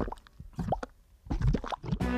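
Cartoon sound effects of liquid dripping: several short plops, a few near the start and more in the second half, with a quiet gap between them.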